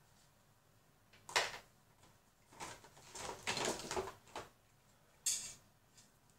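Art supplies being handled, with a short scrape about a second in, a run of irregular rubbing and knocking noises in the middle, and a brief sharp scrape near the end.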